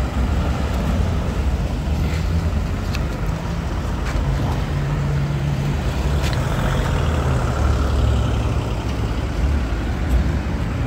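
Motor vehicle engines running in street traffic: a steady low drone with some shifts in pitch and a few faint clicks.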